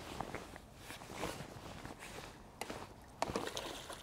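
A few faint, scattered knocks and clicks from a carbon fishing pole being shipped back and handled on a wooden fishing platform while a hooked fish is played.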